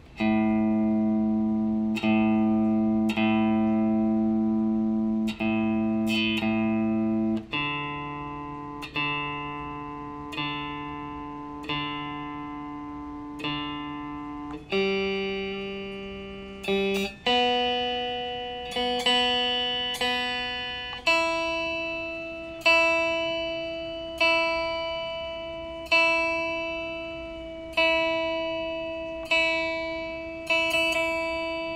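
Electric guitar being tuned, played dry with no effects: one open string at a time is plucked and left to ring, about every one to two seconds. It steps up string by string from low to high, a few plucks on each.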